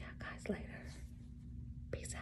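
A woman speaking softly in a few short snatches, mostly in the first half second, over a steady low hum.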